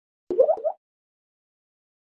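Logo-animation sound effect: three short bloops, each rising in pitch, in quick succession about a third of a second in.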